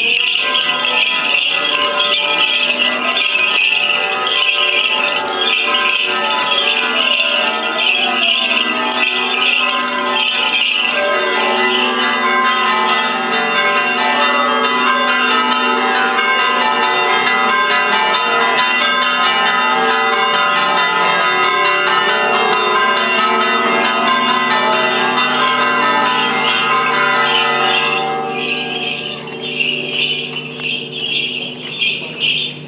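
Small bells jingling steadily, loudest over the first ten seconds and again near the end, with music of long held chords throughout that is strongest in the middle stretch.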